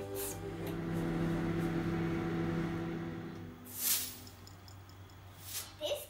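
A kitchen appliance humming steadily for about three seconds, then dying away. Two short hissing swishes follow, one just past the middle and one near the end.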